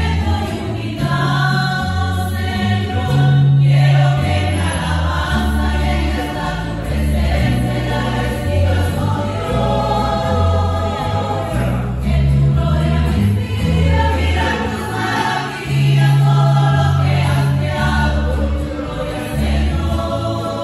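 Women's choir singing a hymn in unison, accompanied by strummed mandolins and acoustic guitars over a plucked bass line.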